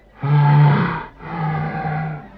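Two long, low moaning voice-like tones, each just under a second, the first bending up in pitch near its end.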